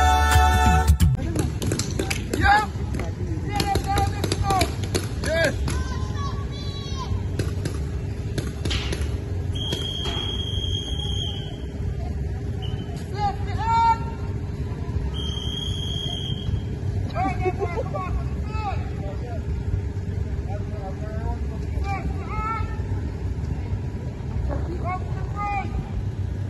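Voices calling out intermittently across an open paintball field over a steady low rumble, with a high steady tone sounding twice near the middle, about a second and a half each time. A choral song cuts off about a second in.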